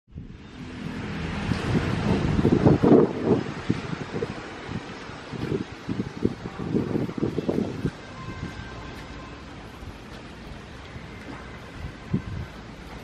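Corrugated sheet-metal gate being opened, rumbling and rattling with irregular clanks. It is loudest about two to three seconds in and dies down to a quiet background after about eight seconds.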